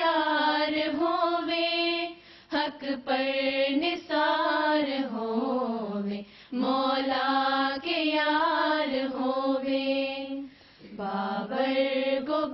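An Urdu devotional poem (nazm) sung unaccompanied by female voices in long, slow melodic lines with held notes, with short breaths between lines about 2, 6 and 11 seconds in.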